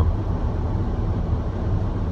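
Steady low rumble of engine and road noise inside a car's cabin while it is being driven.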